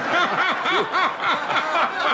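A man laughing in a steady run of short ha-ha pulses, about four a second, over a haze of studio audience laughter.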